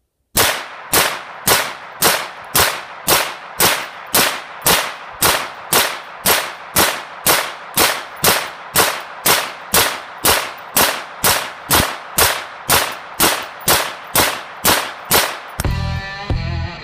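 A Grendel R31 semi-automatic .22 Magnum (22 WMR) carbine firing about thirty sharp shots at a steady pace of about two a second, each shot followed by a short ringing tail.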